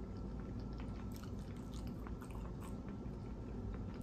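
Close-up chewing with the mouth closed, with faint, scattered crunchy clicks over a low, steady hum.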